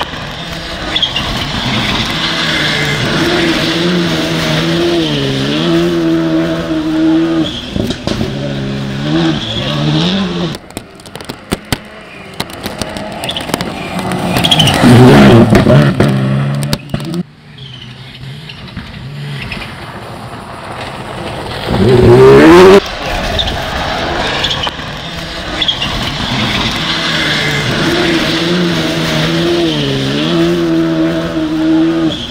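Rally car engine at full throttle on a dirt stage, its pitch climbing and dropping in steps through gear changes. It is heard over several passes, with a loud surge about halfway and a sharp rising rev a little later.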